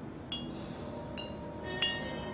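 Eerie soundtrack opening: high chime strikes ringing out three times, the last and loudest near the end, over a steady low drone.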